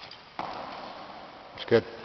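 A sharp bang about half a second in as a 100 kg barbell is caught overhead in a snatch, the bumper plates and feet landing on the lifting platform, echoing and dying away over about a second in a large sports hall.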